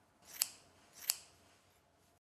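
Scissors cutting hair: two sharp snips, about two-thirds of a second apart.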